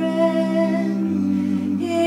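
Music: a singing voice holds one long hummed note over steady sustained low notes.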